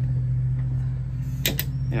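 Electric solenoid latch clicking twice in quick succession about a second and a half in as it is powered from a 9-volt battery, a sign that the wiring to the latch is good. A steady low hum runs underneath.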